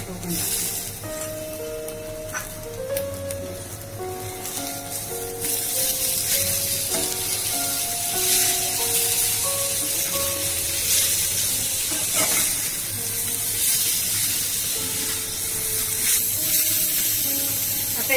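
Sliced onions, dry coconut and garlic sizzling in hot oil in a non-stick pan, turned with a metal spatula; the sizzle grows louder about five seconds in, as chopped tomatoes go into the pan. Background music with a simple melody plays throughout.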